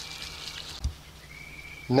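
Quiet background with a faint steady low hum, a single soft low thump about a second in, and a faint steady high tone near the end.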